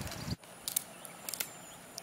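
A few faint, light metallic clicks in two quick pairs, from a dog's collar tag and leash clip jingling as it rolls on its back in the grass.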